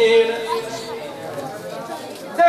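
A male religious chanter's sung note into a microphone, held and then fading out within the first half second, followed by a low murmur of audience voices until his chanting resumes.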